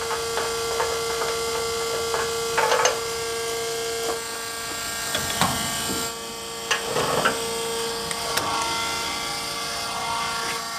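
Electric transfer pump on a tank running with a steady hum that weakens about four seconds in, with scattered clicks and knocks of handling.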